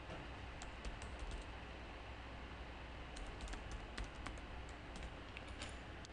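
Faint keystrokes on a computer keyboard in two short runs, one about a second in and another around the middle, as a username and then a password are typed.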